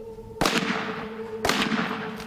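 Two heavy big-game rifle shots about a second apart, each followed by a short echo dying away: shots fired to finish off a wounded elephant.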